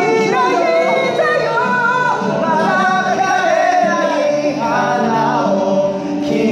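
Young men singing loudly into handheld microphones, their voices amplified, with one sung line running into the next.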